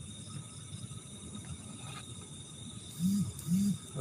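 Faint, steady chirring of night insects, such as crickets, over a soft background hiss. Near the end, two short low hums from a man's voice.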